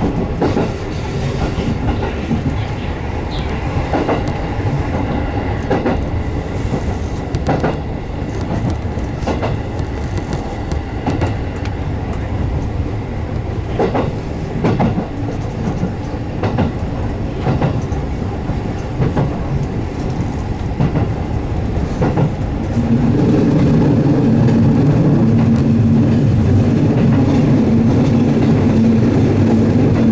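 A JR West 207 series electric commuter train running at speed, heard from inside the driver's cab: a steady running rumble with wheels clicking over rail joints every second or two. About three-quarters of the way through it turns louder and steadier, with a low hum.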